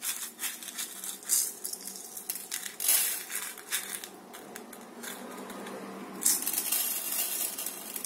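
Small decorative stones rattling and clicking as they are scattered by hand over a glue-coated tin can and spill onto a plastic cutting mat, with several louder bursts of clatter.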